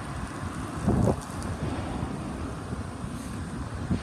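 Wind on a phone microphone: a steady low rumble, with a brief louder swell about a second in.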